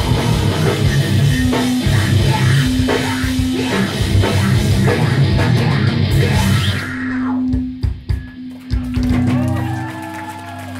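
Metalcore band playing live, with distorted guitars, bass and drum kit at full volume. About seven seconds in, the full playing drops away to a few stop-start hits with short gaps, while a low note is held.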